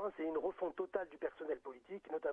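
Speech only: a caller talking in French without pause, the voice thin and narrow as over a telephone line.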